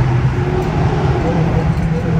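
A Dodge Hellcat's supercharged 6.2-litre V8 cruising at about 60 mph, heard inside the cabin as a steady low drone over road rumble. Its pitch rises slightly about three-quarters of the way in.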